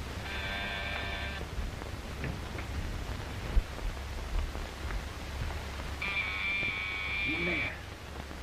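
Electric buzzer sounding twice, each a flat, steady tone that switches on and off abruptly: a short one of about a second near the start, and a longer one of nearly two seconds near the end. Between them there is a single sharp click, over the hiss and hum of an old film soundtrack.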